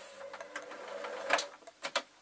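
Singer electric sewing machine stitching, its motor running steadily for about a second and a half before stopping, followed by a few sharp clicks.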